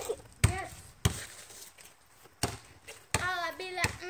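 A basketball bouncing on hard ground after a shot, several separate thuds spaced unevenly. A child's voice calls out near the end.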